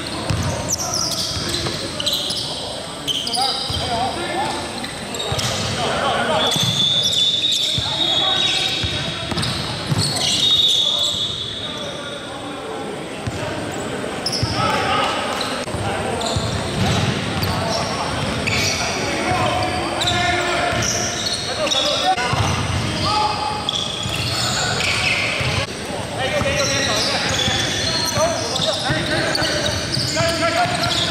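Basketball being dribbled and bounced on a hardwood gym floor, the thuds echoing in a large hall, with players' voices calling out and occasional high sneaker squeaks.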